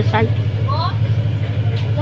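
A steady low droning hum with a fine even pulse, like a motor running, under a short spoken word at the start and a brief voice sound a little under a second in.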